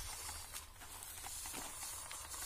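Faint hiss of a hand pump garden sprayer misting strawberry plants, heard as a low even spray noise.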